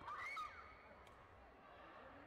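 A short, high-pitched shout lasting about half a second, over the low murmur of a sports-hall crowd, with a single faint click about a second in.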